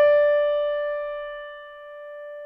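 A single high note on an electric keyboard, struck just before and held, fading slowly: a reference pitch given to a singer during a vocal range test.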